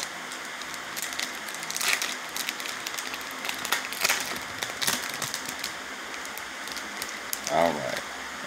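Plastic foil wrapper of a Topps Chrome baseball card pack crinkling and crackling as it is handled and opened by hand. There are many small sharp crackles, with louder crinkles about two and four seconds in.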